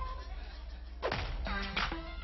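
Sharp swishing hit sound effects for animated on-screen text, one about a second in and another near the end, with music notes starting between them, played over a hall's loudspeakers.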